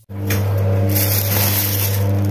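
Clear plastic bag rustling and crinkling as a hand handles fried snacks inside it, over a steady low hum.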